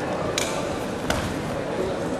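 Steady background noise of an indoor sports hall with two sharp, short clicks or slaps, about two-thirds of a second apart.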